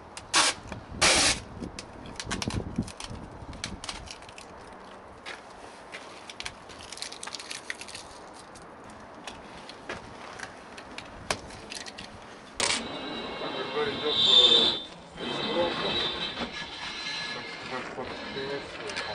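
Adhesive tape being pulled and ripped: two short loud rips near the start, scattered small clicks and handling noise, then a longer, louder pull with a squeal past the middle.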